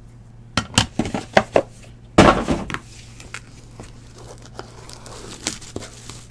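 Hard plastic card holders clicking and knocking as they are handled, with a louder scraping rustle about two seconds in and faint crinkling of a plastic card sleeve after it.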